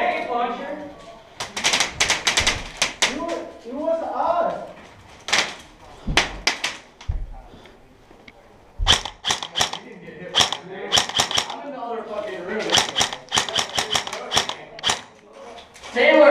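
Paintball markers firing in quick strings of sharp pops, several shots at a time and more of them near the end, with voices in between.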